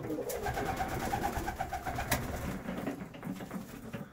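Domestic pigeons cooing in a loft, one giving a quick pulsing run of notes through the first half, with two sharp clicks.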